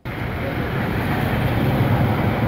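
Steady rushing outdoor noise that cuts in suddenly, from field footage of a river in flood at a bridge pier.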